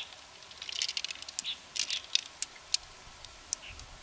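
Irregular small clicks and wet taps from hands working an opened freshwater mussel and its pearls, a few sharp ticks a second.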